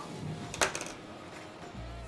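A single short click or tap a little over half a second in, against quiet room sound; a low steady hum comes in near the end.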